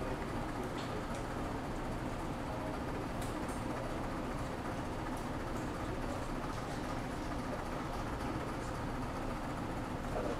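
Steady background noise of a biology lab: a constant, even rush with a few faint ticks.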